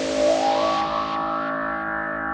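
ARP 2600 clone (TTSH) synthesizer: a hiss dies back in steps while several pitched tones glide upward in the first half second or so, then settle into a sustained drone of stacked tones.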